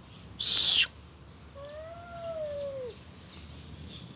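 Two cats in a territorial standoff: a short, sharp hiss about half a second in, then a long, drawn-out yowl that rises slightly and sinks again over about a second and a half.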